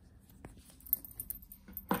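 Handling noise from a wristwatch being unbuckled and taken off the wrist: a few faint, sharp clicks from the metal buckle and case, with light rustling of the strap.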